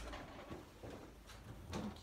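Faint scattered clicks and rustles with a few small knocks.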